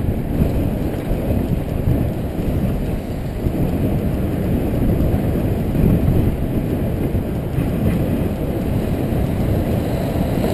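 Wind buffeting the microphone of a bicycle-mounted camera while riding, a steady low rumble mixed with tyre noise on the road surface.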